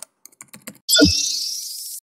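Logo intro sound effect: a quick run of keyboard-like clicks, then about a second in a sudden hit with a low boom and a bright shimmering tail that slowly fades.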